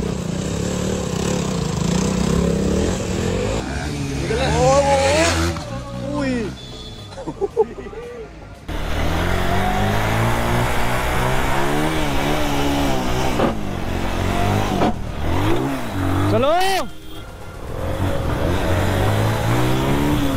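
Motorcycle engines revving and running during stunt riding, pitch rising and falling with the throttle, with abrupt changes in the sound between shots.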